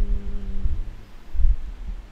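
A man's drawn-out hesitation sound on one steady pitch trails off under a second in. Dull low thumps on the microphone follow, the loudest about a second and a half in.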